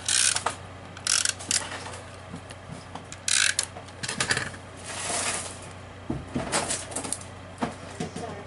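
Paper and card stock handled on a craft table: several short, scratchy rustles as a paper piece is positioned and stuck down onto a handmade card.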